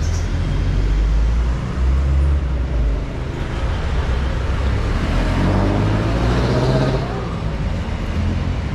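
Street traffic: a steady low rumble of idling and passing motor vehicles. About five seconds in, one engine rises in pitch as it speeds up.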